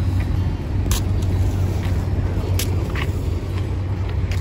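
Steady low rumble of wind buffeting the microphone, with two sharp clicks, about a second in and again past two and a half seconds.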